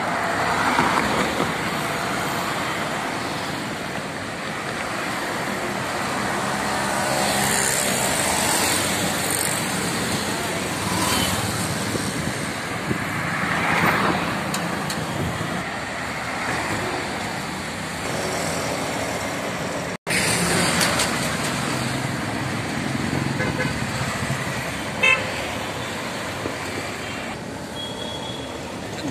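Road traffic on a busy city street: cars and auto-rickshaws driving past, with louder swells as vehicles go by, and a short horn toot near the end.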